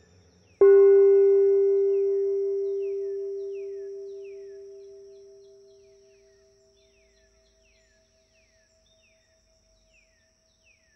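A singing bowl struck once about half a second in, its low ring fading away over about six seconds while one higher overtone keeps on with a slow pulsing wobble. Faint short falling chirps repeat about once a second behind it.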